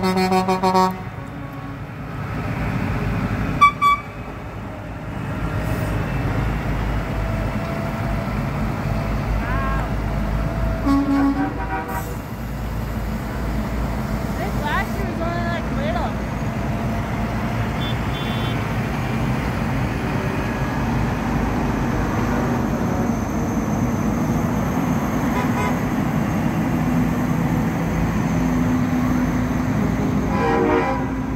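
A truck horn sounds and cuts off about a second in, a short toot follows a few seconds later, and then heavy trucks' diesel engines run steadily as they roll past.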